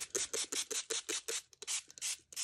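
A small hand tool rubbed quickly back and forth over embossed, inked watercolor cardstock, making short scratchy strokes about six a second that thin out near the end.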